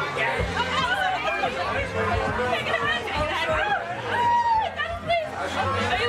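Several women's voices chattering over one another, with music underneath.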